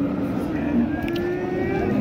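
Crowd chatter of many people talking at once, with a faint held tone that rises slightly in pitch through the second half.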